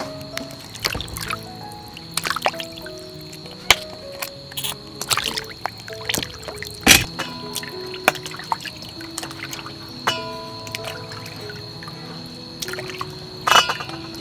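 Background music of held melodic notes, over water splashing and dripping in a metal basin as hands wash pieces of fish, with a few sharper splashes.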